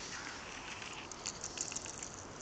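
Footsteps crunching on a thin layer of fresh snow, with a quick run of short, sharp crunches in the second half.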